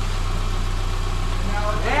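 Freshly rebuilt EJ253 2.5-litre flat-four of a 2010 Subaru Impreza idling steadily, running so smoothly that it sounds like a sewing machine.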